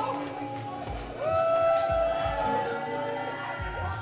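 Live band playing an upbeat groove: electric guitar with held, gliding notes over bass and drums with a steady low pulse.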